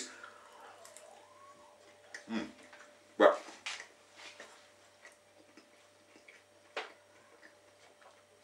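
Eating sounds: a fork clinking against a ceramic bowl and mouth noises while chewing, a handful of short sounds in a quiet room.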